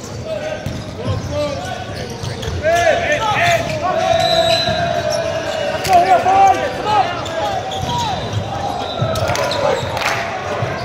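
Volleyball rally on an indoor court: the ball struck by hands and forearms, sneakers squeaking on the court floor, and players shouting calls, echoing in a large hall.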